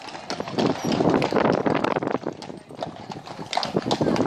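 Many horses' hooves clip-clopping on a tarmac road, irregular overlapping hoofbeats of a large group of horses walking past.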